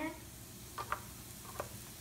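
A few short clicks and light scrapes of a metal knife and fork against the plate of an electric waffle iron as a waffle is worked loose. The clicks come about a second in, and another follows a little later.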